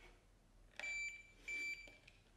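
Two electronic beeps from a BENTSAI HH6105B2 handheld inkjet printer, each a steady high tone lasting about half a second, the second following close on the first.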